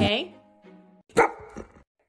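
Golden retriever giving one short bark about a second in, after the tail of background music fades out.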